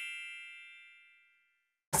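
A bright, bell-like chime sound effect ringing out and dying away over about the first second, followed by complete silence.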